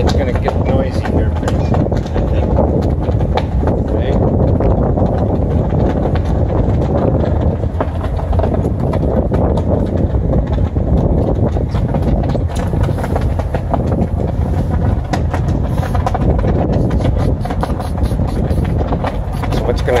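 Steady rumble of a moving ferry mixed with wind buffeting the microphone on the open deck, with no horn or whistle sounding.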